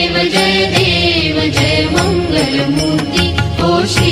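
Hindu devotional aarti music for Ganesh, with a wavering melody line over a steady beat of percussion.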